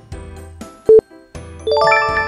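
Background music with a countdown timer's beep about a second in. Near the end a quick rising run of chime notes rings out as the countdown finishes.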